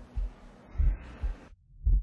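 Slow, low heartbeat-like thuds in a documentary soundtrack, about one every 0.7 s, with a brief dropout about three quarters of the way through.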